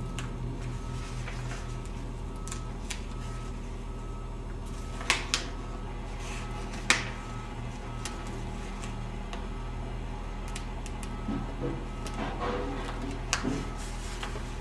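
Opaque heat-transfer paper being peeled by hand from its backing sheet, giving a few sharp paper crackles over a steady low hum.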